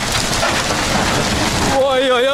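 Huge bonfire of stacked wooden pallets burning, a loud, even roar and crackle of flames that breaks off near the end into a wavering voice.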